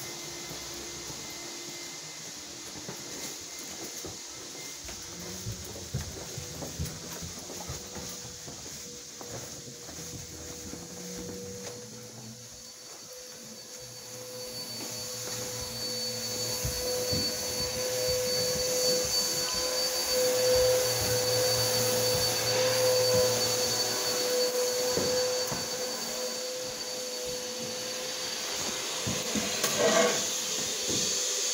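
Portable carpet extractor's vacuum, fitted with a vacuum booster, running steadily through a long hose run, with a steady whine. It grows louder a little past halfway and stays loud near the end.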